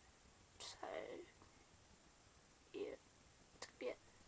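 Faint whispered voice in three short snatches, barely above the room's quiet.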